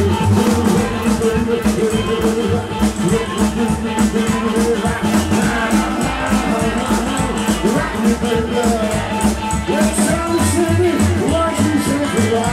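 Live band playing an instrumental break: upright bass walking a steady line under a quick, even drum shuffle, with guitars and a harmonica carrying the melody.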